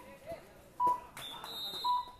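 Short electronic beeps at one steady pitch, about one a second, like a countdown timer. A little over a second in, a high, shrill whistle blows until the end, as a referee's whistle stopping play after a tackle.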